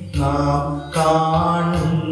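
A small group singing a slow hymn together into microphones, with long held notes and short breaths between phrases near the start and just before the one-second mark.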